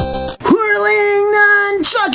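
A short burst of chiptune-style synth music cuts off about half a second in, and a high voice then sings one long, steady note, breaks off briefly near the end, and starts a second note that slides down in pitch.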